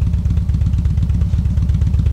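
2007 Harley-Davidson Street Glide's Twin Cam 96 V-twin idling steadily at about 1,000 rpm, with an even low pulsing rumble.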